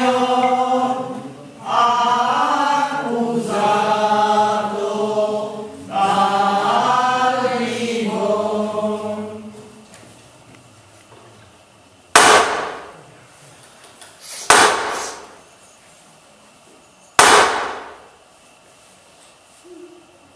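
A group of voices singing a slow liturgical chant in phrases, fading out about halfway; then three sharp hammer blows a couple of seconds apart, each ringing briefly, as the nail is knocked out of the crucifix's hand.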